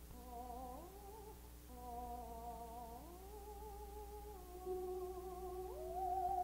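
Quiet orchestral music: several sustained, wavering notes held together that slide upward in pitch several times, swelling louder near the end.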